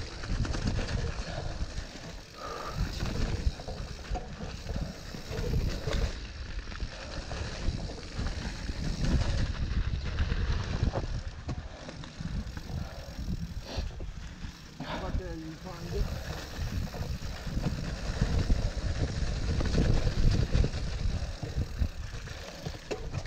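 Mountain bike ridden over a rough trail: a continuous rumbling rattle of tyres and frame over dirt and stones with scattered knocks, and wind buffeting the camera microphone.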